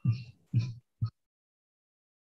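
A man chuckling over a video-call line: three short laughs in the first second, the last one briefest.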